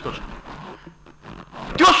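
A pause in a man's speech, filled by a faint breathy sound without clear pitch, before his speaking resumes near the end.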